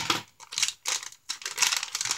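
Foil blind bag crinkling in the hands as it is being worked open, a run of quick irregular crackles.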